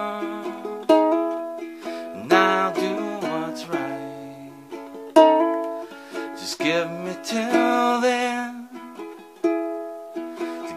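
Kala ebony concert ukulele playing chords in an instrumental passage between sung lines, each chord struck and left to ring and fade before the next, every second or two.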